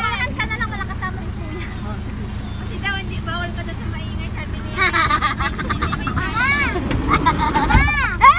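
Several people chatting in a van over the steady low hum of its idling engine, with a low thump near the end.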